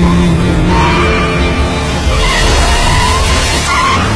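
Car tyres screeching in a long skid, starting suddenly and wavering in pitch, over music.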